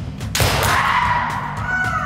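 A sudden sharp shinai hit about a third of a second in, followed by a long kendo kiai shout for a kote strike that slowly falls in pitch, over background music with a steady beat.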